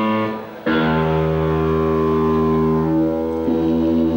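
Live electric guitar with band: a short struck chord dies away, then from under a second in a loud low chord is held ringing, its notes shifting slightly near the end.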